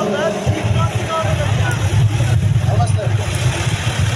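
A small farm tractor's engine running close by, a low rumble that swells from about half a second in, under the scattered voices of a large crowd.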